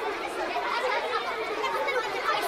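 Many children's voices chattering at once, a steady overlapping babble with no clear words.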